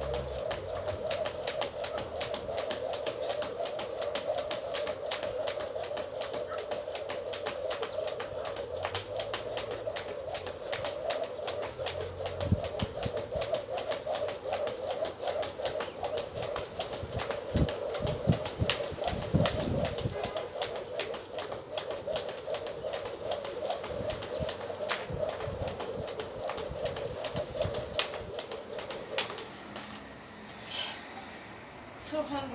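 A skipping rope slapping the ground in a steady rhythm of about two strikes a second, with a steady hum underneath, both stopping shortly before the end as the set ends.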